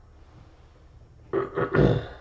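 A man clears his throat in two quick, rough rasps about a second and a half in, after a quiet stretch.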